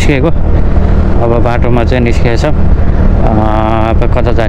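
A 125 cc scooter riding at a steady road speed, with a steady low rumble of engine and road noise, and a man talking over it.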